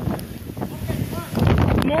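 Storm wind buffeting the microphone, a dense low rumble that eases a little in the middle and picks up again; a voice breaks in near the end.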